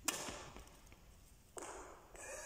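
Badminton racket striking a shuttlecock once, a sharp crack right at the start that rings on briefly in the sports hall. A second, softer noise follows about a second and a half in.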